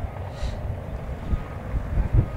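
Wind buffeting the microphone outdoors: an uneven low rumble that rises and falls, with a faint brief hiss about half a second in.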